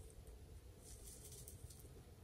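Near silence: a faint low rumble of background noise, with a few faint, short high-pitched ticks about a second in.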